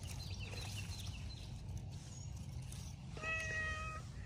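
Domestic cat giving one short, steady-pitched meow near the end, over faint background hiss.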